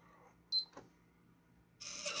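A Sunbeam digital timer gives one short, high beep as its start button is pressed. Near the end, a small 3-volt TT plastic-geared DC motor on a tab-fatigue test jig starts running with a steady noise.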